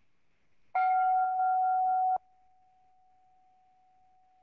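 A single struck bell-like chime rings out under a second in. About a second and a half later it drops suddenly to a faint lingering tone of the same pitch.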